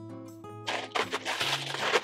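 Light background music, then from under a second in, the crinkle of a plastic zip-top bag and the crunch of Maria biscuits being crushed inside it.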